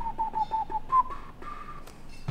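Whistling: a quick run of about six short notes on nearly the same pitch, then a higher note held for most of a second.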